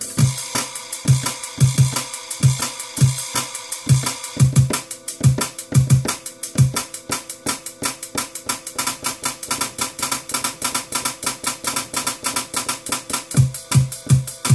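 A drum and bass track played from a Pioneer DDJ-SX2 controller, with hot cues triggered from the pads while quantize is off. There is a fast kick and hi-hat beat; the kick drops out for several seconds mid-way and returns near the end.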